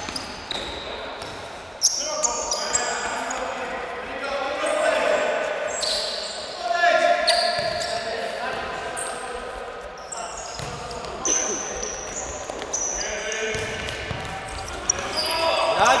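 Indoor futsal game in a large echoing hall: many short high squeaks of sneakers on the court floor, a few sharp kicks of the ball, and players shouting, loudest about seven seconds in.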